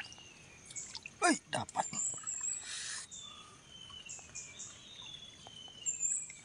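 Wet squelching and clicking of a hand digging into soft mud flat for sea worms, busiest a second or two in, with a short rush of noise near the middle. Behind it, a bird gives long, slowly falling whistles, twice.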